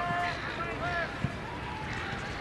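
Distant shouts and calls of football players and spectators, as short cries rising and falling in pitch, mostly in the first second.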